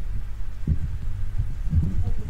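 Low, steady hum and rumble with irregular soft thumps and a small knock about a second in, the background noise of an open microphone on a video call.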